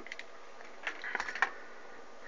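A few light clicks and taps, one at the very start and a quick cluster about a second in: handling noise as the camera is moved around the radio and meter.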